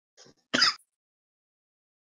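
A person making one short throat-clearing noise about half a second in, just after a faint breath.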